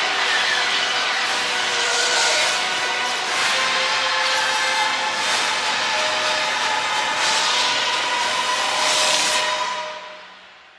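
Loud film-trailer soundtrack: music under a dense wash of repeated whooshing swells and blasts, like spacecraft passing and explosions, fading away at the very end.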